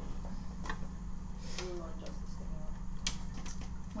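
A few light clicks and knocks of computer hardware being handled, with faint voices and a steady low hum in the room.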